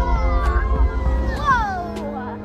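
Ride soundtrack of orchestral music over a deep rumble, with a rider's high-pitched squeal that slides down in pitch, followed by a second, quicker falling squeal near the end.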